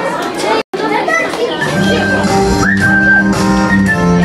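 Children's chatter in a large hall, broken by a split-second gap where the recording is cut; about a second and a half in, music starts with sustained low notes under a melody while voices carry on.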